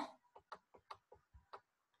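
Near silence with about eight faint, irregular ticks and taps, from a digital pen writing on screen.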